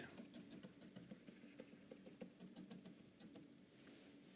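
Faint, quick taps of a stylus tip on a tablet as a dashed line is drawn, a tick for each dash, stopping about three seconds in.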